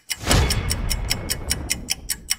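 Countdown-timer sound effect: a swoosh, then rapid clock-like ticking at about seven ticks a second, growing fainter.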